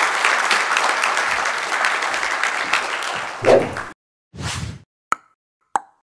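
Audience applauding for about four seconds, cut off suddenly. Then a short rush of noise and two sharp pops from a logo sound effect.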